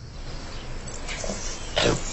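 A bulldog's vocal sounds over a low film-soundtrack background, with a short louder burst near the end.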